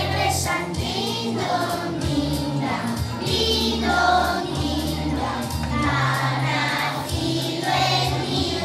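A group of young children singing a Christmas song together over accompanying music with a steady bass line.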